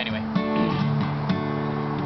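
Acoustic guitar strummed twice, about a second apart, with the chords left ringing between strokes.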